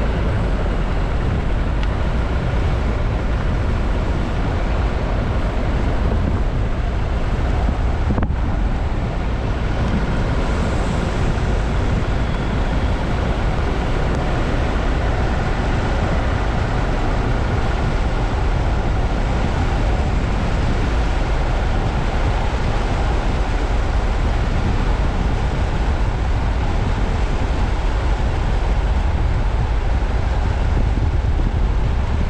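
Steady running noise of a vehicle driving along a wet sand beach: engine and tyre rumble mixed with wind.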